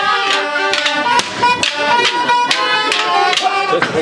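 Traditional Provençal folk dance music: a high pipe melody over a steady beat of a little over two strokes a second.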